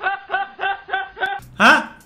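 A man laughing in short, evenly spaced bursts, about three a second, then a louder, higher laugh near the end.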